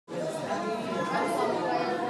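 Speech only: overlapping voices of several people talking in a room.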